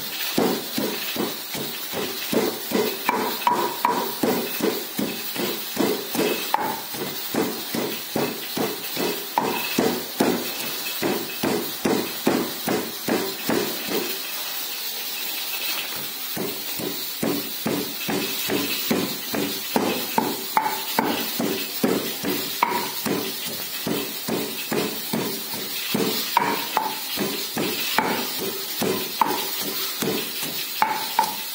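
A wooden pestle pounding garlic cloves in a stone mortar, in a steady run of dull strikes at about two to three a second, pausing for a couple of seconds about halfway through. The cloves are being crushed to a paste.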